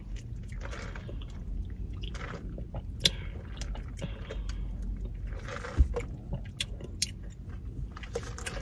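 Close-up mouth sounds of sipping an iced drink through a plastic straw and chewing and swallowing it, with wet clicks and smacks. A soft knock comes about six seconds in.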